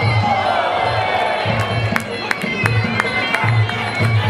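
Traditional Muay Thai fight music with a repeating drum beat and a reedy wind-instrument line, under a crowd shouting and cheering. Several sharp hits fall in the middle.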